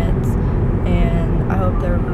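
A woman talking inside a car, over a steady low rumble of the car cabin.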